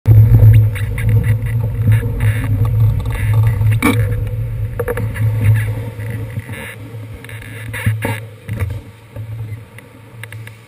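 City street traffic at an intersection: vehicle engines running in a steady low drone that fades after about six seconds as a box truck turns across close by, with a sharp knock about four seconds in and another near eight seconds.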